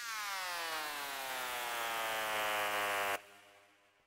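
Synthesized impact or downsweep from the Serum soft synth: a buzzy, many-harmonic tone sliding down in pitch, layered with bright white noise. It cuts off abruptly about three seconds in, leaving a faint tail that dies away.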